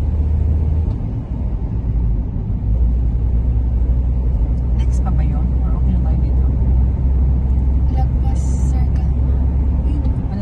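Car cabin road noise while driving: a steady deep rumble that eases briefly about a second in, then carries on.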